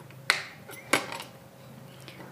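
Wall light switch flicked by a toddler's hand: two sharp clicks about two-thirds of a second apart, with a fainter tick just after the second.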